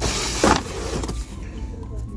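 A flat cut-out Halloween yard-stake sign scraping as it is slid out of a stack in a cardboard display box: one brief scrape in the first half second, then faint store background.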